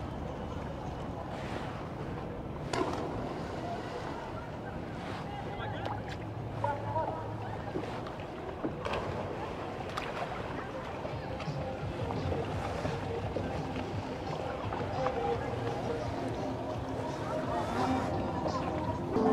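Canal water lapping around a kayak, with a few short knocks and faint voices in the distance.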